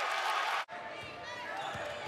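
Arena crowd noise, loud and dense, cut off abruptly just over half a second in. After the cut, quieter gym sound with a few basketball bounces on the hardwood and short sneaker squeaks.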